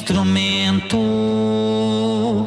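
Music: a voice holding long, low sung notes, sliding into each one, with a brief break about a second in before the next held note.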